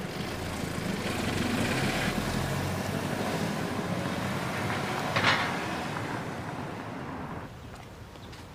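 A car pulling away and driving off. Its engine and tyre noise swell over the first two seconds, then fade away over the next five. A brief, sharper noise stands out about five seconds in.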